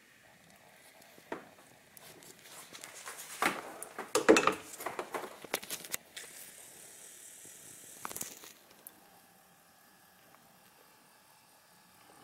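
Handling noise of a pleated paper air filter being worked into a plastic airbox against its retaining tabs: scattered rustling, scraping and light clicks, busiest a few seconds in, then quiet for the last few seconds.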